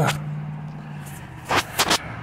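Two sharp knocks about a quarter second apart near the end, from a phone being handled after it was dropped, over the steady low hum of an idling car.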